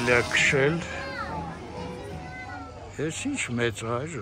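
Children and adults talking and calling out at a play area, with faint music underneath.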